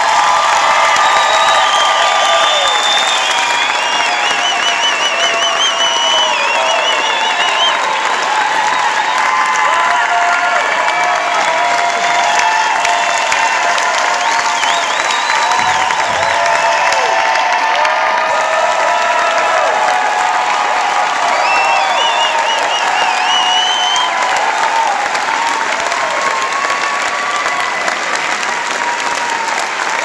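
Concert audience applauding steadily, with cheers and whistles rising above the clapping; it eases slightly near the end.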